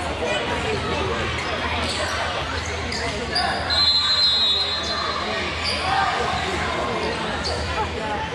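Busy volleyball-gym sound in a large echoing hall: players and spectators calling and chattering, volleyballs being struck with sharp hits now and then, and a whistle blowing for about a second near the middle.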